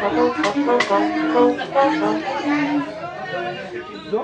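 Tamborazo band playing live: a brass melody of held notes over drum and cymbal strikes, thinning out near the end.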